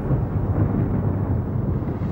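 Deep, continuous rumbling sound effect for a comet fragment's fireball slamming into Jupiter, like rolling thunder or an explosion.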